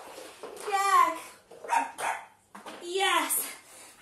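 A woman's voice in several short, high, expressive vocal bursts, each bending up and down in pitch, with brief pauses between them.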